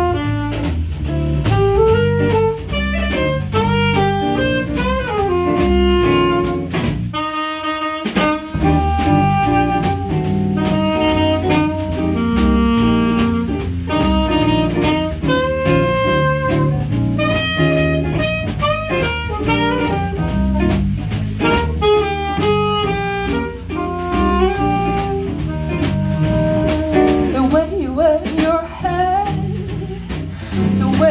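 Small swing band playing live: a saxophone carries the melody over guitar, bass guitar and drum kit. About seven seconds in, the bass and drums drop out briefly under a held note, then the band comes back in.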